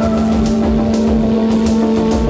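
Electronic synthesizer music from an Ensoniq SQ-80: a held low drone with sustained chord tones above it, over a steady low beat about twice a second and a light hissing percussion pattern.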